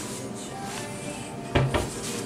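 A kitchen cupboard door knocks shut about one and a half seconds in, a single short thud, over background music.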